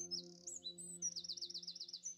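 Birds chirping, with a fast trill of about eight notes a second in the second half, over a low sustained ringing tone that fades away.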